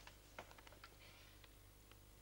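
Near silence: a sheet of paper being handled, giving a few faint soft ticks and rustles over a low steady hum.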